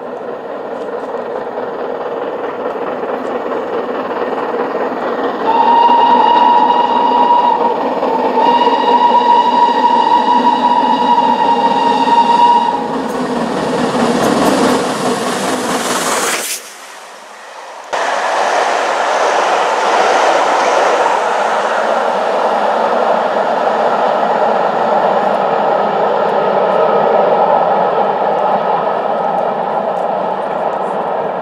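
GWR Castle class four-cylinder 4-6-0 steam locomotive 5043 Earl of Mount Edgcumbe running through a station at speed, its whistle giving two blasts on one steady note about six seconds in: a shorter one, then a longer one of about four seconds. The engine's noise swells as it passes close, dips sharply for a moment, and then the coaches roll steadily past.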